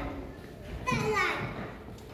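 Indistinct talking, with a brief high-pitched voice about a second in.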